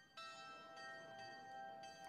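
Faint bells of a town-square clock's carillon chiming a slow tune, several ringing notes sounding on over one another.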